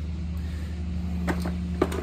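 A steady low machine hum, with two short clicks near the end.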